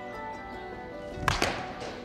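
Background music with steady held tones; about a second and a quarter in, the sharp crack of a baseball bat hitting a ball in a batting cage, with a smaller knock just after.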